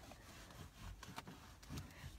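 Faint rubbing of a cleaning cloth wiped across a car's plastic interior door trim, with a few light ticks.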